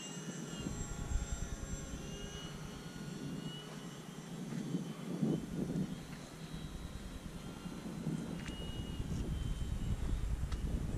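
Electric RC model warplanes, an FMS F4U Corsair with a brushless motor and an E-flite P-47, flying at a distance. Their motors and propellers give a thin high whine that comes and goes in short stretches as the planes manoeuvre.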